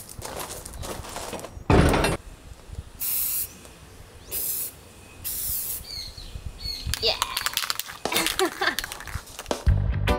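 Aerosol spray-paint can hissing in three short bursts about a second apart, preceded by a single knock.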